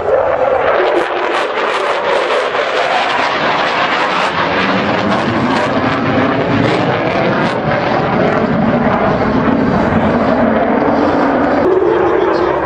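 Loud, continuous jet noise from an F-16 Fighting Falcon's single engine as the fighter flies display manoeuvres overhead.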